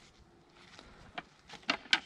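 Rope swing knocking and clicking as a child climbs onto its seat: a few sharp clicks in the second half, the loudest near the end.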